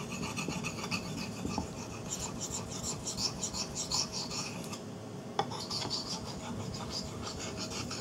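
Steel knife blade scraping back and forth on a wet whetstone in steady, repeated strokes, with one light click about five seconds in. The blade is CPM 3V steel being ground to a new edge bevel, very hard steel that is slow to cut.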